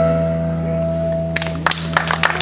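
The final note of a nylon-string classical guitar rings out and fades. About a second and a half in, audience applause starts: scattered claps at first, then thicker.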